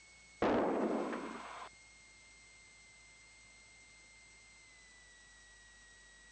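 A burst of radio static in the aircraft's headset audio, starting abruptly about half a second in, fading a little and cutting off suddenly after about a second and a half, like a squelch opening on a brief keyed transmission. A faint steady electrical whine runs underneath.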